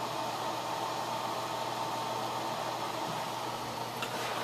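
Small oscillating tower desk fan running steadily: an even rush of air with a faint steady whine.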